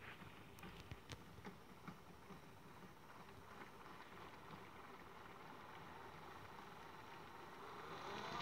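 Faint sloshing of water and laundry in a toy washing machine's small drum as it turns slowly, with a few light clicks in the first two seconds.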